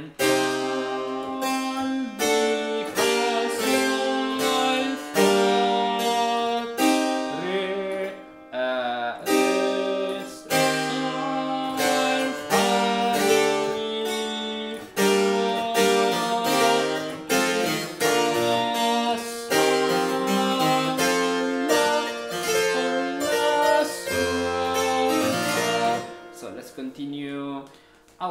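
Two-manual harpsichord playing a partimento exercise on a tied bass, chords over a moving bass line, with a short break about eight seconds in and the playing dying away near the end.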